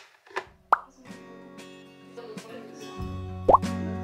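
Two short rising bloop sound effects, the second and louder one near the end, over background music that starts about a second in and gains a steady bass line about three seconds in.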